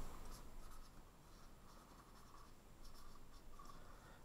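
Dry-erase marker writing on a whiteboard: faint, short scratchy strokes as an arrow and a word are written.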